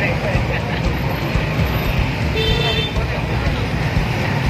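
Street traffic at close range: motorcycle and three-wheeler engines running with a steady low rumble and voices in the crowd. A short horn beep sounds about two and a half seconds in.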